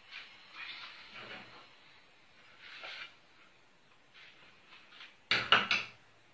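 A silicone spatula scraping softly against a ceramic dish of polenta in a few short strokes, then a louder clatter of several quick knocks near the end.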